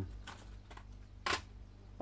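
A single short, sharp click about a second and a quarter in, against quiet room tone.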